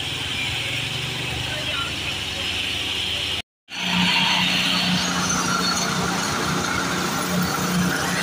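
Asphalt paver's engine running steadily while it lays asphalt. The sound cuts out briefly about three and a half seconds in, then comes back with a steadier, louder low hum.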